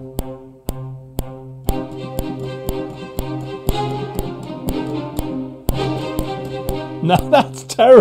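Sampled orchestral strings, Spitfire Audio's Abbey Road Orchestra cellos and first violins, playing short spiccato notes over a held low note, with a metronome click ticking about twice a second. A man's voice comes in near the end.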